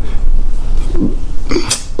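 A man's brief low throat sound, like a burp or grunt, about a second in, then a sharp breath in just before he speaks again, over a steady low hum.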